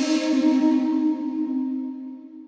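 One long held note from a sampled instrument layer set (shakuhachi, baritone sax and horse fiddle) with breathy air on top, played back through the distant hall microphone position. The note begins to fade near the end.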